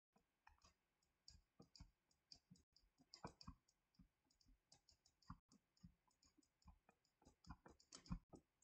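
Near silence with faint, irregular clicks and taps of a stylus on a writing tablet as an equation is written out by hand.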